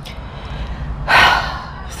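A woman's quick, audible breath, a gasp-like rush of air about a second in that lasts about half a second, in a pause between her sentences.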